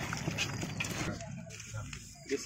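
Hands squishing and kneading raw chicken pieces with spice masala in a large bowl: wet, irregular squelching that thins out about a second in.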